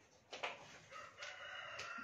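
A rooster crowing faintly: one long call whose pitch holds steady, growing a little louder over the last second and a half. There is a brief rustle or tap just before it.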